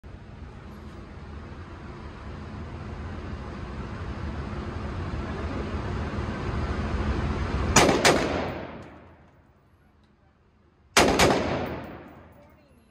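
Bushmaster AR-15 rifle with a binary trigger firing two quick pairs of shots, each pair about a quarter second apart (one on the pull, one on the release), with echo in an indoor range. The first pair comes about eight seconds in, after a rushing noise that builds until then, and the second comes about three seconds later.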